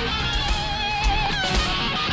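Electric guitar solo from a live arena-rock concert recording: a sustained lead note held with vibrato for over a second, then bent away, over a steady drum beat.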